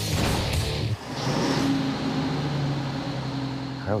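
A bus driving off, its engine and road noise running steadily under background music.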